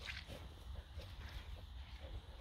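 English springer spaniels faintly snuffling and rustling through rough grass as they hunt, over a low steady rumble.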